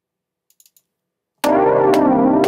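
Near silence with a few faint clicks, then about one and a half seconds in a software synthesizer starts a sustained chord on playback: a single recorded MIDI note triggering a full C minor chord through the Scales & Chords player.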